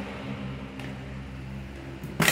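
A steady low background hum made of several even tones, over a faint hiss.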